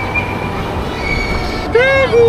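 Steady low rumble of indoor play-area background noise with faint distant voices, and a high-pitched voice calling out briefly near the end.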